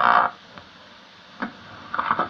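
Cassette tape playback through a stereo's speaker: a brief pitched tone stops sharply just after the start, leaving quiet tape hiss with a single faint click about one and a half seconds in.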